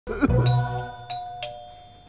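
Doorbell chime ringing: a few struck notes that ring on and fade away.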